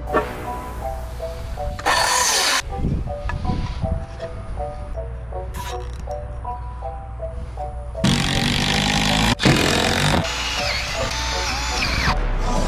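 Background music with a steady melody, over which a Milwaukee Fuel cordless driver runs in bursts, driving screws into plywood. There is a short burst about two seconds in, then longer runs from about eight seconds on, broken once by a brief stop.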